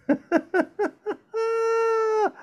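A voice laughing in five short bursts, each falling in pitch, then holding one high note for about a second that slides down as it ends.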